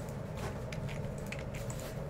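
Quiet room tone: a low steady hum with a few faint, scattered clicks and rustles.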